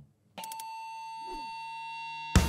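Electronic transition sound effect: a steady held synthetic tone with a thin high shimmer. It starts suddenly about a third of a second in, with a short pitch sweep near the middle, and leads into a segment title sting.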